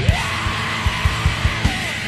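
Heavy, distorted rock band recording: distorted guitars and driving drums with regular kick hits, and a yelled vocal line near the start.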